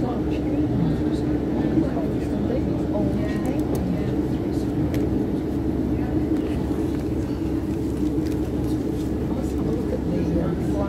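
Interior of a British Rail Class 150 Sprinter diesel multiple unit running at speed: steady drone of its underfloor diesel engine with wheel and rail rumble, and a few faint clicks.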